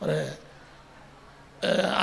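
A man speaking into a microphone: a short drawn-out syllable at the start, a pause of about a second, then his speech resumes near the end.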